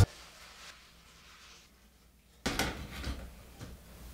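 Hand-cranked steel pasta machine being worked: about two seconds of near quiet, then a sudden clatter of metal clicks and knocks that goes on more softly for about a second.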